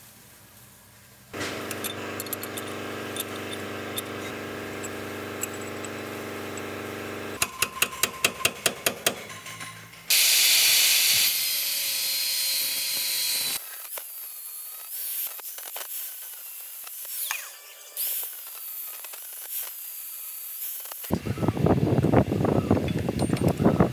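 An angle grinder grinding steel on a forklift's brake disc hub, loud for about three and a half seconds starting about ten seconds in. Before it comes a steady machine hum for about six seconds, then a run of rapid even clicks. After it come scattered light clicks of hand work.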